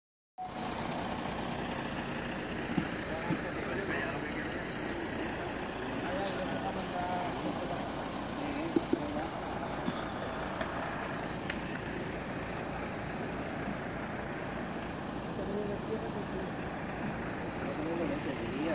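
A vehicle engine running steadily, with indistinct voices and a few sharp knocks, the loudest about three seconds in and near nine seconds in.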